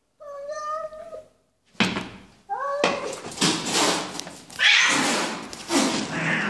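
Domestic cat meowing: one drawn-out call lasting about a second, then a shorter call about two and a half seconds in. After that come several seconds of loud, harsh noise.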